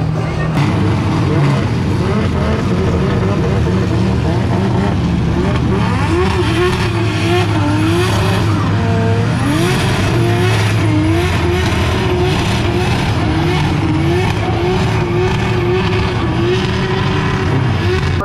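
Drift cars' high-power engines revving hard in a tandem drift, the pitch swinging up and down again and again as the drivers work the throttle through the slide. Tyres squeal and skid underneath.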